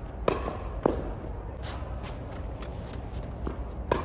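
Tennis balls hit by racket and bouncing on an indoor hard court, a few sharp knocks over light shuffling footsteps. Just before the end comes a loud racket strike as a jumping two-handed backhand (jackknife) is hit.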